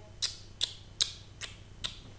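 A woman blowing kisses: five quick lip-smack kissing sounds, evenly spaced at about two and a half a second.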